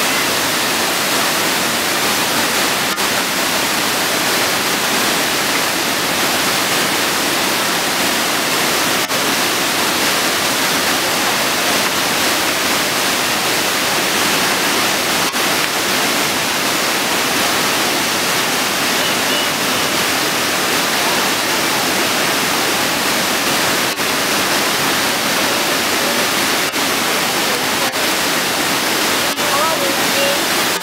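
A waterfall: water rushing steadily over a broad, tiered cascade, a loud and unbroken noise throughout.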